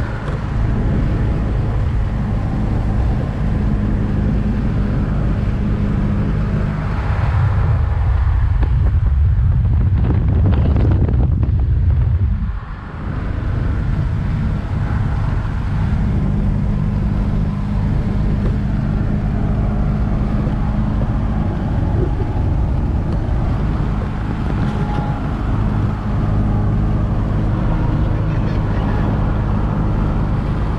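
1979 Alfa Romeo Alfetta 2.0's engine running steadily at highway cruising speed, heard from inside the cabin along with road and wind noise. The engine note grows louder for a few seconds, then briefly drops away about halfway through before settling back to a steady drone.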